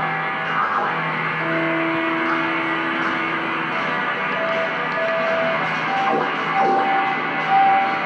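Electric guitar playing long held notes, one after another, over a dense, noisy rock-style wash of sound.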